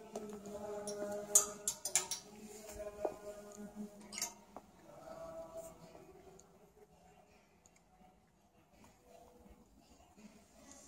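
Clothes hangers clicking against a metal clothing rail as garments are pushed along it: a quick cluster of sharp clicks between one and two seconds in and another click about four seconds in, quieter afterwards.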